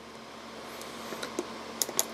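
A few light clicks and knocks from hands handling the plastic case of a Sony ICF-A10W clock radio, mostly near the end, over a faint steady hiss.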